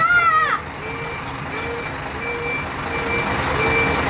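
A child's short, high exclamation at the very start, then electronic warning beeps repeating about every 0.6 s, alternating between a low tone and a high tone.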